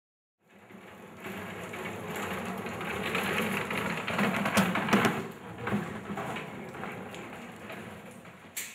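Casters of an equipment road case rolling over a concrete floor: a rattling rumble that swells to its loudest about halfway, with a few knocks, then eases off.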